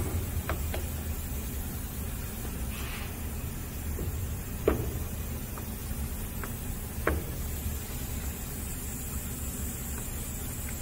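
A few sharp metal clicks and knocks as the air bearing spindle fixture of a tool and cutter grinder is slid and turned by hand, the loudest a little before the middle, over a steady low hum and a faint hiss.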